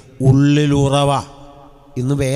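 A man's voice through a microphone speaking Malayalam: one drawn-out phrase held at a fairly even pitch, then a short pause before he goes on.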